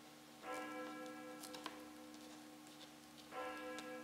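A bell struck twice, about three seconds apart, each stroke ringing on in a sustained tone, faint. Light, scattered scratchy ticks, like a quill pen on paper, sound over it.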